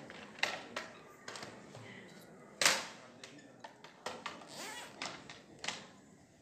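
Handling noise of a microphone being fitted to clothing: irregular clicks, knocks and rustles, the loudest about two and a half seconds in, with faint voices underneath.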